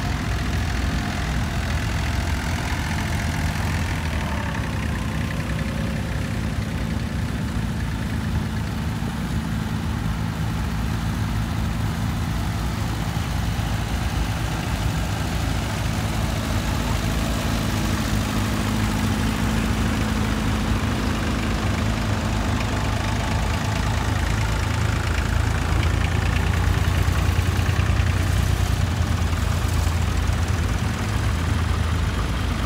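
Several vintage tractor engines running at low speed as the tractors drive slowly past in a line, a steady low engine rumble that grows somewhat louder near the end as one passes close.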